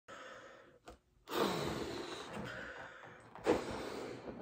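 A latex balloon being blown up by mouth: breath pushed into it in a short blow, a brief pause about a second in, then a long steady blow, with a sharp burst of breath about three and a half seconds in.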